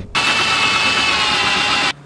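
A loud burst of steady mechanical noise with a high whine running through it, cutting in and out abruptly after about two seconds.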